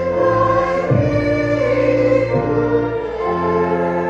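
Choir singing a hymn over held accompaniment chords, the harmony changing slowly every second or so.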